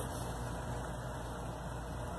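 Steady low background hum and hiss, with no distinct event.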